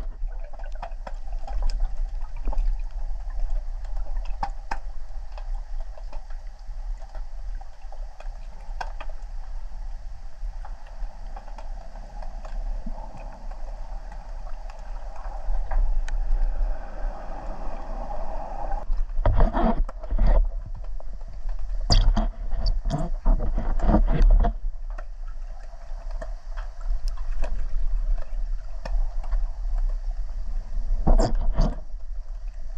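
Muffled underwater noise picked up by a camera in a waterproof housing during a freedive: a constant low rumble and a steady hum that swells and then stops about two-thirds of the way in, followed by a few clusters of sharp knocks and splashy bursts.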